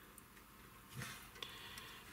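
Quiet handling noise from test leads being attached to a capacitor: a soft knock about a second in and a small click shortly after, as alligator-clip test leads are clipped on.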